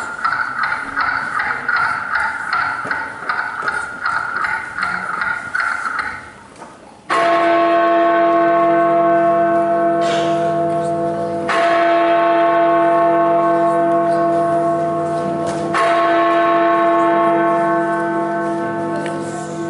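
A large bell tolls three times, about four seconds apart, starting about seven seconds in; each stroke comes in suddenly and rings on with many steady tones. Before the first stroke there is a rapidly pulsing, fairly high sound.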